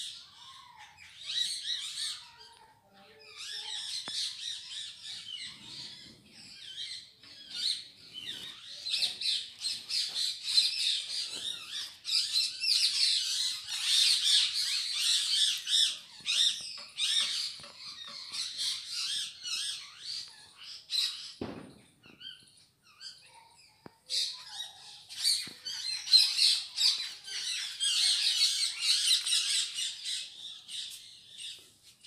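A flock of small birds chirping and squawking in a dense, continuous chatter, dropping off briefly about 22 seconds in. A single dull knock just before that lull.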